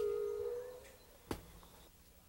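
Fading tail of a two-note, bell-like musical chime sting, dying away over about the first second. A single short click follows about 1.3 s in.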